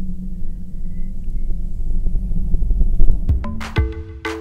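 Steady low drone of a de Havilland bush plane's piston engine heard inside the cockpit, building slightly in loudness. About three seconds in, music with sharp percussive hits comes in over it.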